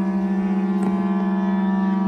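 Several shofars (ram's horns) blown together in one long held blast, a low steady note with a fast waver in it.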